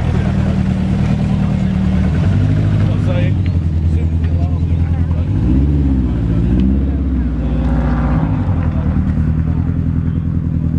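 Subaru Impreza's turbocharged flat-four boxer engine running at low revs as the car moves off, a loud, steady low burble. Around the middle the revs briefly rise and fall.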